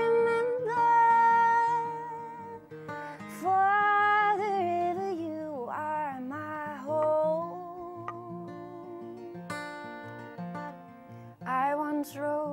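A woman singing a folk song in long held notes, accompanied by a fingerpicked steel-string acoustic guitar. The voice drops out briefly a few times while the guitar carries on.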